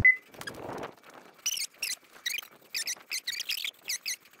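Field audio played back at eight times speed, which turns it into a string of short, quick, high-pitched chirping squeaks.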